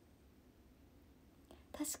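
Near silence (room tone), then a woman starts speaking just before the end.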